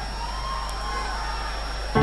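Steady noise of a live concert recording: audience and hall ambience with a faint low hum, without music or clear voices.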